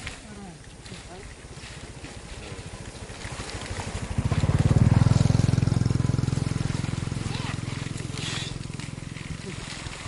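A small engine running with a fast, even beat. It comes in loud about four seconds in and then slowly fades, as if passing by.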